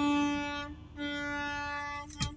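A steady, buzzy pitched note, held for about a second, broken off briefly, then held again at the same pitch for another second.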